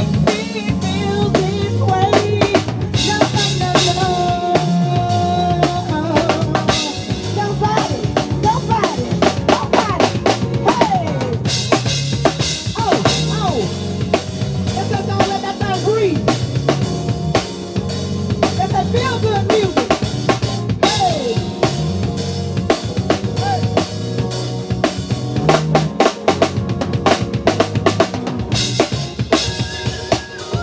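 Live band playing an instrumental passage: a drum kit keeps a steady beat on bass drum and snare under keyboards and a stepping bass line.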